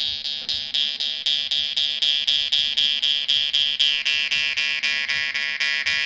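Jaw harp (vargan) played with a steady rhythm of plucks, about five a second, over one unchanging drone, with the mouth shaping a shifting overtone melody that slides down in pitch a little before the middle.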